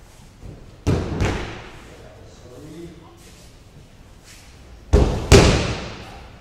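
Aikido breakfalls: a thrown partner landing on judo mats twice, each landing a heavy double thud of body and slapping arm on the mat. The first comes about a second in and the second near the end.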